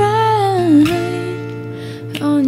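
Soft acoustic cover song: a singer holds a note that slides down in pitch just before the one-second mark, over gentle acoustic guitar accompaniment.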